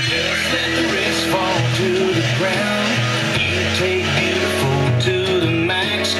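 Country song playing on an FM radio station, with singing and guitar.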